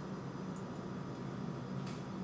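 Steady low room hum with two faint light ticks, about half a second in and near the end, as small jewelry pliers close a wire eye-pin loop.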